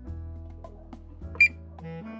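One short high beep from an Allosun EM135 automotive multimeter as its SELECT button switches it into buzzer (continuity) mode, heard about midway over background music.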